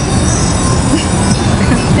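Loud, steady road-traffic noise on a busy city street.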